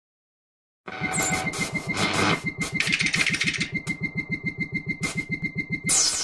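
Electronic glitch-style intro sound effects: a fast, even pulsing low throb with a steady high beeping tone and bursts of static-like hiss, starting about a second in and ending in a falling sweep.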